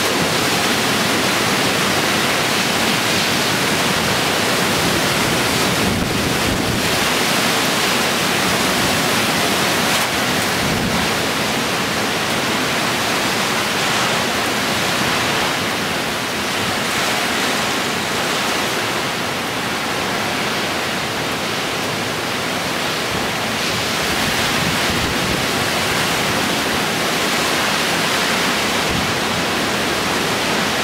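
Tropical cyclone winds and heavy rain: a loud, steady rush of wind through trees with driving rain, buffeting the microphone. It eases slightly in the middle, then builds again.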